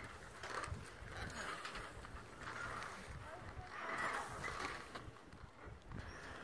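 Faint footsteps on the wooden planks of a suspension bridge, several soft knocks, among a few soft patches of rustling noise.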